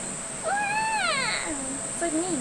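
A single high squealing call about a second long, rising slightly and then falling in pitch, over a steady high drone of rainforest insects.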